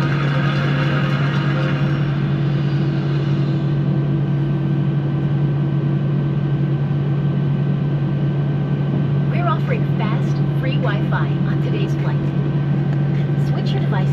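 Airbus A319 cabin noise with the jet engines idling: a steady low hum with a fainter tone above it. A faint announcement voice comes in over it in the last few seconds.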